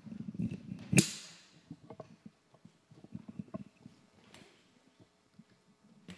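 Handling noise from a handheld microphone: a low rustle, a sharp knock about a second in, then a scatter of small taps and clicks.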